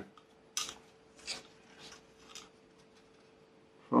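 Light scrapes and clicks of a thin balsa stringer being handled and pressed against a balsa fuselage frame: a sharper scrape about half a second in, then a few fainter ones about half a second apart.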